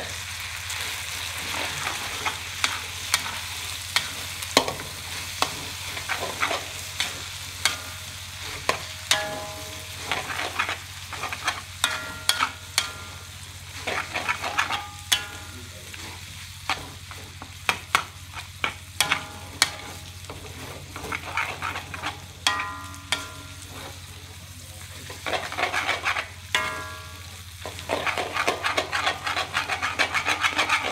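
A metal spatula scraping and clanking against a steel wok as noodles and squid are stir-fried, the strokes coming in irregular bursts, some ringing briefly, and fast and dense near the end. Under it the food sizzles steadily with a low hum.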